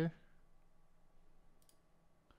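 A computer mouse clicking faintly, two quick clicks about one and a half seconds in, over low room tone.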